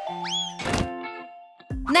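Video-transition sound effects over background music: a quick rising whistle-like glide, then a short whooshing hit about two-thirds of a second in, while held music notes fade out. A voice starts near the end.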